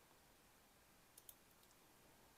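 Near silence, with two faint computer-mouse clicks close together a little over a second in.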